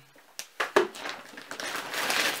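Two quick hard plastic knocks, then a plastic bag rustling and crinkling as goods are handled and drawn out of it.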